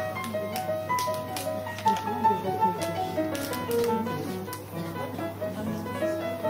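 Piano playing a light, tuneful operetta accompaniment in a steady pattern of repeated notes, with scattered sharp clicks and knocks over it, mostly in the first half.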